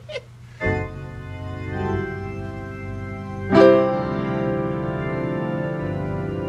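Organ playing sustained chords: a chord comes in about half a second in, and a louder one at about three and a half seconds is held steady without fading.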